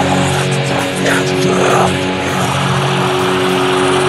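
Blackened drone doom metal: heavily distorted electric guitar holding low notes in a slow, dense, unbroken drone.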